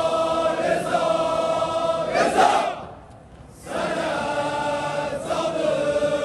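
Crowd of men chanting an Azeri mourning elegy (mersiye) together, holding long sung lines. The first line ends about two seconds in on a loud short accent, a brief lull follows, and a second long line starts at about three and a half seconds.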